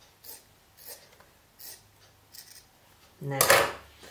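Scissors cutting through T-shirt fabric: four short snips about two-thirds of a second apart.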